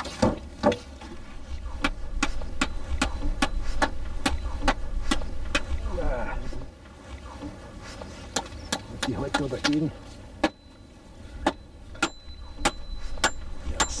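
Hammer driving nails into a wooden fence rail: a run of sharp strikes, about two a second, with a thin metallic ring near the end. Wind rumbles on the microphone throughout.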